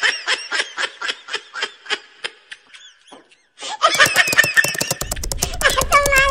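High-pitched giggling and chattering from a voice, in quick repeated pulses. It breaks off briefly about three seconds in, then starts again louder and denser.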